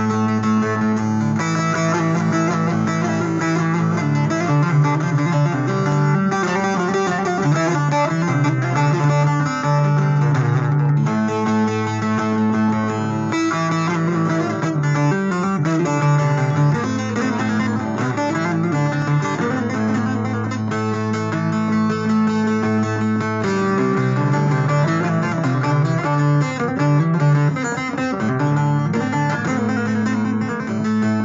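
Instrumental music led by a plucked string instrument playing a melody over held low notes that change every few seconds.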